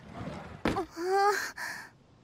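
A young woman's voice: a breathy sigh, then a short exasperated call of "matte" ("wait").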